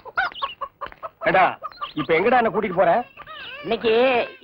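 Domestic hens clucking, mixed with people's voices.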